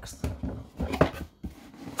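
Cardboard box and booklet being handled on a table: a few short knocks and rustles, the sharpest about a second in, then quiet.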